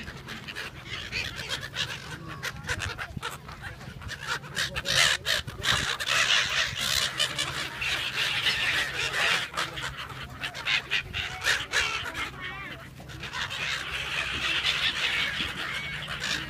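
A flock of gulls calling all around, many short harsh squawks overlapping, busiest in the middle and again near the end, with people chattering in the background.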